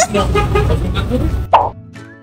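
Young men laughing and talking, with street noise under the voices. About one and a half seconds in, the voices cut off with a short sharp sound, and light background music takes over.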